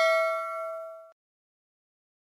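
Bell-chime 'ding' sound effect of a notification-bell animation, ringing on and fading, then cutting off suddenly about a second in.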